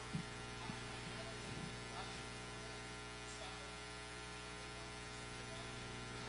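Faint, steady electrical mains hum with no speech.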